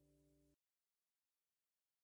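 Near silence: the last faint trace of the video's closing music stops abruptly about half a second in, leaving dead digital silence.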